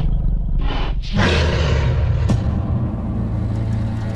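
Television title-sequence music and sound design: a deep rumble with a whoosh about a second in, a sharp hit a little past two seconds, then a low sustained drone.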